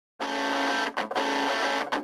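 Opening of a rock song: a guitar starts a fraction of a second in and plays a repeating figure, with brief breaks about once a second.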